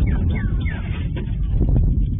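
Sonic boom from F-16 fighter jets picked up by a home surveillance camera's microphone: a loud low rumble that sets in just before and slowly fades, with a few short high falling chirps in the first second.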